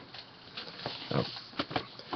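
A man's brief grunting "oh" and a few short knocks and clatters from handling plastic VHS cassette cases as he picks them up.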